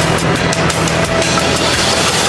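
Loud closing theme music of a TV news programme, starting abruptly just after the presenter's sign-off.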